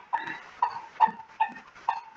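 An animal's short, repeated calls: five brief pitched calls, about two a second.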